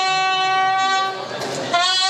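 A bugle played solo: one long held note, a short breathy break about a second and a half in, then a new note starting near the end.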